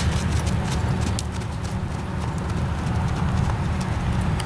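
Hoofbeats of an American Quarter Horse mare loping on arena sand, a run of sharp footfalls that thins out after the first second or so, over a steady low rumble.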